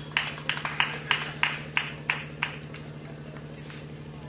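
Rhythmic hand clapping, about three claps a second, that stops about two and a half seconds in. A steady low electrical hum runs under it.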